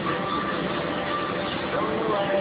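Indistinct voices over a steady, dense background noise.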